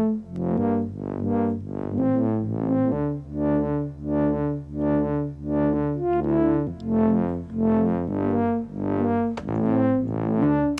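A simple synthesizer melody playing on a loop, short repeated notes at about two a second over a low bass line that changes every few seconds, with no drums. It is the bare melodic idea that an electronic dance track was built up from.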